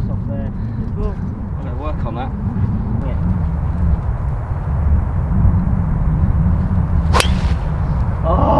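Wind buffeting the microphone throughout, and a little over seven seconds in a single sharp crack as a driver strikes a golf ball off the tee.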